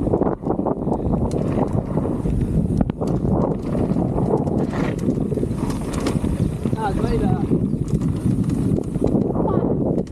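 Wind buffeting the microphone of a camera on a mountain biker riding fast down a dirt track. Under it are the rumble of the tyres on the dirt and frequent rattles and knocks from the bike over the bumps.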